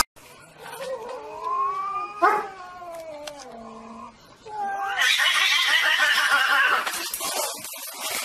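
Cats yowling at each other in a standoff: long, wavering calls that slide up and down in pitch, with a sharp sound about two seconds in, then a louder, harsher screech from about five seconds in that cuts off near the end.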